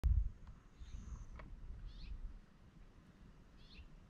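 A bird calling twice, short falling chirps about a second and a half apart, over a low rumble that is loudest at the very start.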